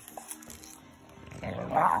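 French bulldog biting and chewing a piece of apple held out by hand, with its mouth and breathing noises. They are faint at first and grow much louder over the last half second.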